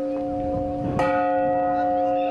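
Church bell tolling slowly: its tones ring on from the previous stroke, and it is struck again about a second in.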